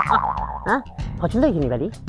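A voice over background music with a regular beat.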